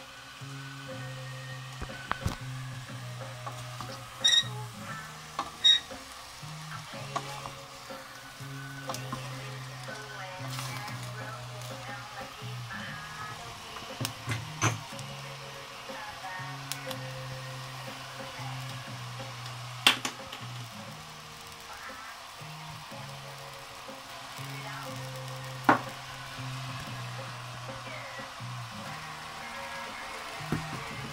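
Pork, sliced porcini mushrooms, onion and red pepper frying in a steel pot, with a wooden spoon stirring and knocking sharply against the pot now and then. Music plays in the background.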